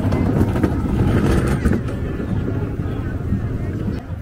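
Steady low rumble of a vehicle engine moving slowly past close by, with crowd voices mixed in.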